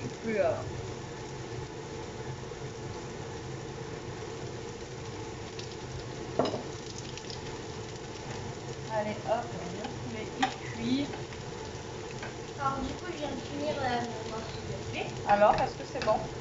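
Zucchini galettes frying in a pan: a steady sizzle, with a single click about six and a half seconds in.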